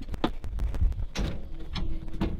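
A Sprinter van's rear door being unlatched and opened: a series of sharp clicks and knocks over handling noise and a low rumble.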